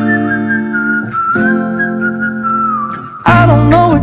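Music: a whistled melody over guitar chords. A singing voice comes in about three seconds in.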